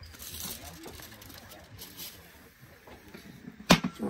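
A single sharp clunk near the end as the lid of a Weber barbecue is shut over a foil tray; before it, only faint background with low voices.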